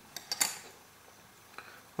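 A few short, light clicks and taps of small objects being handled on a workbench, all within the first half second, the loudest about 0.4 s in; then only faint room noise.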